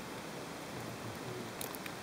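Faint, steady hiss with no distinct event, and a few light rustles or clicks near the end.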